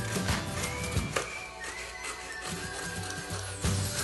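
Background music with a steady beat; the bass drops out for a couple of seconds partway through, then comes back near the end.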